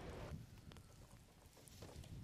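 Near silence: faint outdoor background rumble with a few faint, short clicks.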